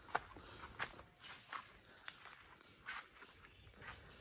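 Faint footsteps: a handful of soft steps about three-quarters of a second apart, with a longer gap a little after the middle.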